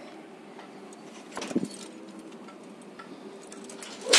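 Soft metallic clinking of climbing carabiners and harness gear while the jumper stands ready at the edge, with one short louder sound about a second and a half in.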